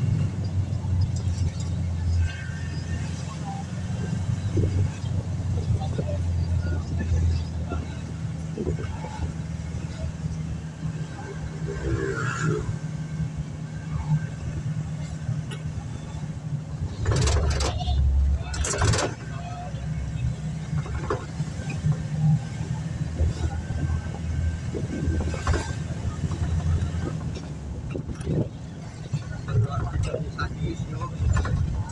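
Engine and road noise inside a moving van's cabin, a steady low drone while driving. Two short, louder noisy bursts come a little past halfway.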